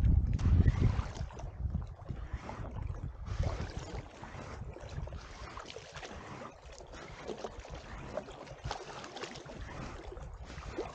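Wind buffeting the microphone, heaviest in the first second or so, over water lapping and splashing against the hull of a packraft moving through the water.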